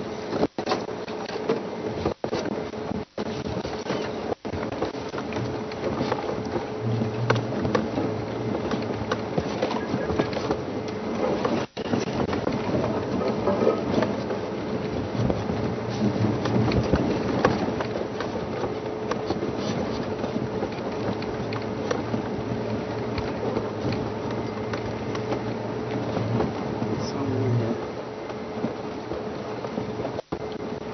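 Rough, noisy live-broadcast field sound with a steady hum, broken by brief sudden dropouts: four in the first few seconds and another about twelve seconds in. The dropouts are the transmission breaking up.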